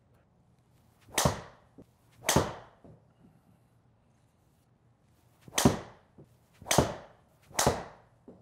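Five quick whooshes, each starting sharply and falling away in pitch: two about a second apart, then after a pause three more in quick succession.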